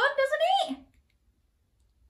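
A woman's voice speaking briefly in a small room, then quiet with a few faint clicks.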